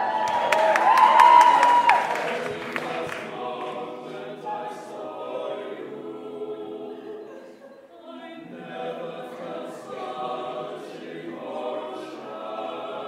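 Six-voice a cappella ensemble of men and one woman singing in harmony from an arrangement of pop and theme tunes. A high held note with a glide is loudest in the first two seconds, then the voices carry on in softer, shifting chords. A run of quick sharp clicks sounds in the first three seconds.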